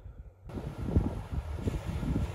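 Wind buffeting the microphone in irregular low rumbling gusts. About half a second in, the sound cuts abruptly to a louder, brighter hiss that carries the same gusting rumble.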